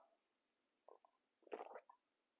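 A person sipping and swallowing a hot drink from a mug, with two faint gulps in the second half, the second louder.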